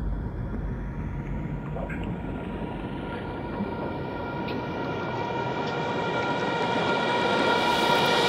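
Psytrance build-up: a rising noise sweep over held synth tones, growing steadily louder as the deep bass drops away about halfway through, leading into the drop.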